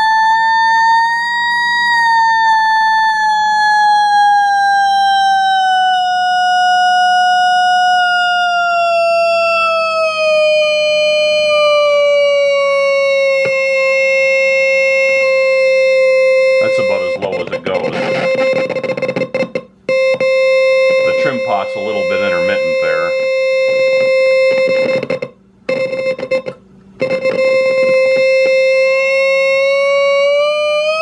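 Buzzy square-wave tone from a small computer speaker driven by the RCA 1802's Q output, which the program toggles on and off as fast as it can. As the processor's clock-speed trim pot is turned, the pitch rises slightly, glides down by nearly an octave and holds, then climbs again near the end. For several seconds midway a scratchy crackle rides over the tone, and the tone cuts out briefly three times.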